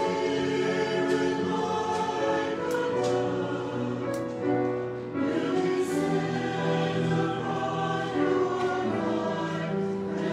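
Mixed church choir of men's and women's voices singing in parts, holding sustained chords, with a short break between phrases about five seconds in.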